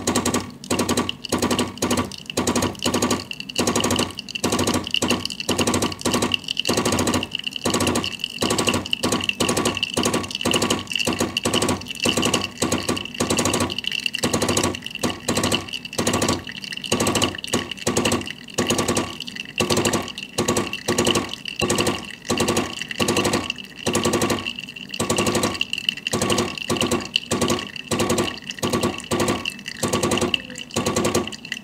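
Gaggia Classic Evo Pro espresso machine's vibratory pump running while it pushes water through the coffee during a shot, a rhythmic buzz that pulses several times a second with a steady high whine over it.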